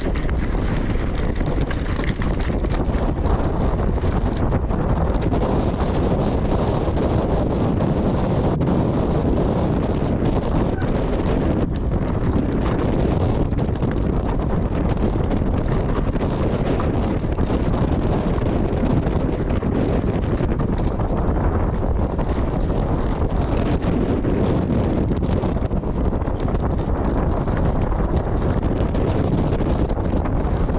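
Steady, heavy wind buffeting a GoPro Hero 9's microphone as a Pace RC295 mountain bike descends at speed. Underneath are the tyres rolling and the bike rattling over stony singletrack, with frequent small knocks.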